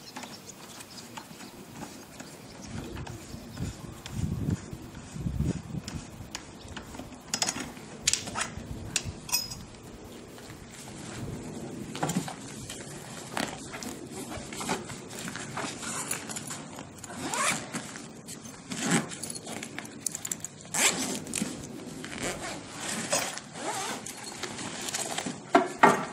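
Clicks and scrapes from handling small metal trailer parts, then the zipper on the Cyclone Chubby trailer's fabric bag being pulled open in several long strokes in the second half.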